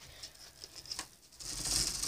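Faint rustling and scratching of a phone being handled close to hair and clothing, with a light click about a second in. A steady high hiss grows louder about one and a half seconds in.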